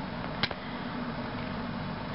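Steady background hum and hiss, with one sharp click about half a second in as the plastic Sharkzord toy is handled.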